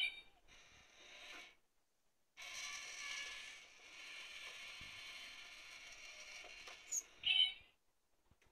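Battery-powered cat-in-a-box coin bank toy running. From about two seconds in, a steady high whirring buzz lasts about four and a half seconds as the toy cat pushes up the lid and pops out. It is followed near the end by a short high meow.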